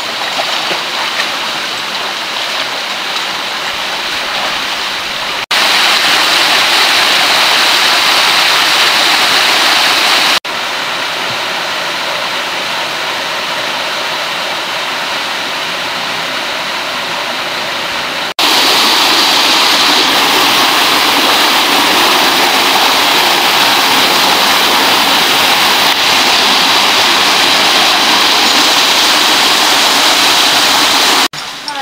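Rushing water of a mountain stream and its small waterfall cascades, a steady dense roar. The level jumps abruptly several times, loudest in the last third, where water pours over a step.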